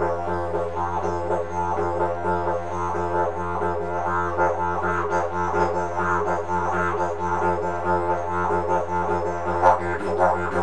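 Didgeridoo drone held steady on one low note while the player works a fast, even rolling 'totten-e' rhythm. A subtle mouth shape and a shifting tongue make the overtones above the drone pulse several times a second.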